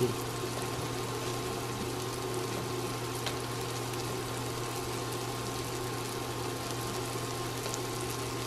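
Sausage patties frying in a pan on an induction cooktop: a steady, even sizzle over a constant low hum.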